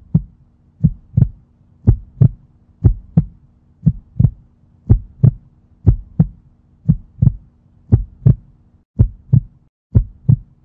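Heartbeat sound effect: a double thump, lub-dub, repeating about once a second over a faint low hum that drops out near the end.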